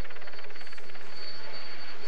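Helicopter noise, a steady drone with a fast, even flutter that fades about halfway through.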